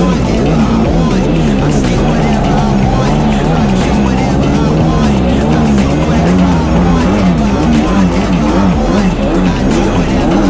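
Kawasaki 750 SXI Pro stand-up jet ski's two-stroke twin running hard at speed, its pitch rising and falling with the throttle, with background music mixed over it.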